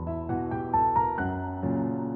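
Background piano music: a melody of single notes over held lower chords.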